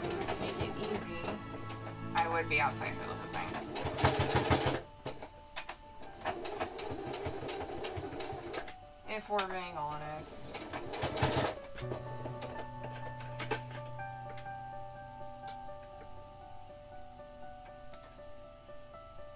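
Domestic electric sewing machine stitching fabric in short runs, its needle chattering rapidly. A song with a singing voice plays underneath.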